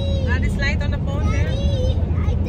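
Steady low road and engine rumble inside a moving car's cabin at highway speed, with a high-pitched voice speaking two short phrases over it.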